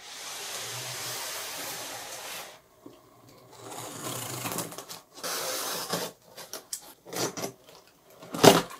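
A small handheld cutter slitting the packing tape along the seams of a cardboard shipping box. It makes long scraping strokes, then shorter crackles and knocks of cardboard near the end.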